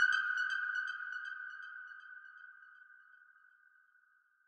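Closing tail of a minimal dark techno track: a single high, bell-like synthesizer tone with quick repeating echoes above it, fading out over about three seconds to near silence.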